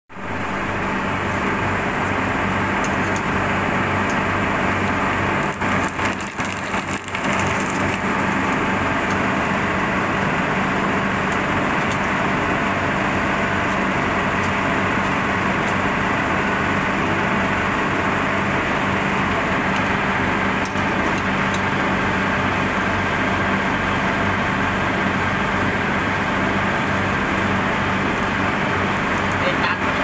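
Hot oil sizzling steadily as snack pellets deep-fry and puff up in a wire basket, over a steady low hum.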